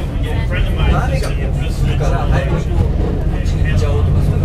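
People talking over a steady low rumble of a moving vehicle.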